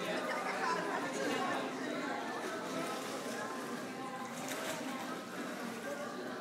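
Indistinct chatter of several people's voices overlapping, with no clear words.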